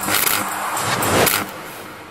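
Intro sound effect of an animated title bumper: a loud, noisy whoosh that fades out about one and a half seconds in.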